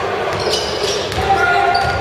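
Basketball being dribbled on a hardwood gym floor, with short high sneaker squeaks as players move and background voices in the gym.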